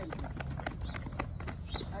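A group of people tapping their hips with their hands in a qigong bone-tapping exercise, making an irregular patter of pats at about five a second. The tapping is done so that the vibration is felt in the bones.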